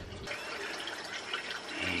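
Steady rushing background noise with no distinct event, quieter than the speech around it.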